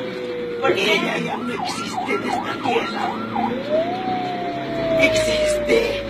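Ambulance siren heard from inside the vehicle: a slow falling wail, then a fast yelp of about three rises and falls a second for two seconds, then a slow rise and fall again. People are talking over it.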